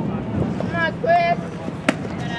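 Wind rumbling on the microphone at an outdoor ballfield, with a voice shouting about a second in and a single sharp click just before the end.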